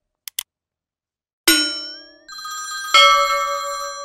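Sound effects of an animated subscribe button: two quick mouse clicks, then a bright chime about a second and a half in, a wavering tone, and a louder bell-like ding at about three seconds that rings on as it fades.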